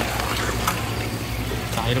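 Tap water running in a steady stream and splashing onto a stainless steel board beside a wet fish fillet. Underneath is a steady low hum, and there are a few faint ticks.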